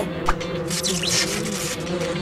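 Cartoon sound effect of bees buzzing in a hive: a steady drone that wavers slightly in pitch, with a short sharp blip about a third of a second in and a brief high shimmer around one second.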